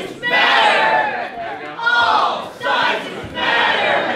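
A group of voices chanting a protest slogan, loud shouts repeating about once a second.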